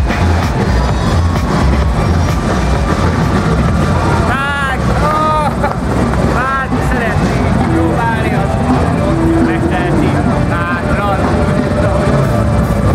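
Loud, steady low rumble with voices over it and little or no music, broken by a few short, high calls that rise and fall, near the middle and again near the end.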